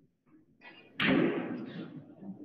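Pool balls knocking together in the rack as it is pushed tight on the cloth, with one sharp clatter about a second in that dies away over the next second.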